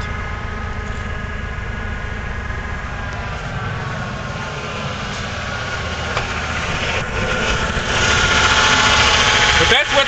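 Ford 4.9 L inline-six engine idling steadily. It is heard first from inside the cab and gets louder from about eight seconds in, close to the open engine bay. The idle speed control still sticks a little, which the owner thinks means it needs replacing.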